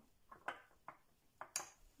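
Several faint, irregular clicks of a spatula knocking against a small glass bowl while stirring a thick cream.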